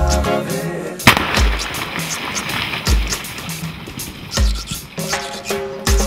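A single sharp rock-blasting explosion about a second in, from charges packed into holes drilled in a netted boulder, followed by about three seconds of noisy rush as the blast dies away. Reggae music with a steady bass beat plays throughout.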